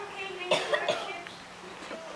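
A cough about half a second in, the loudest sound, followed by a few short sharp sounds, over faint background voices.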